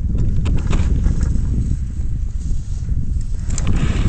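Wind rumbling on the microphone and skis scraping over the snow as the person holding the camera skis downhill, with scattered small clicks and knocks.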